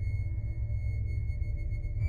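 Eerie ambient drone music: a steady low rumble with a constant thin high tone above it.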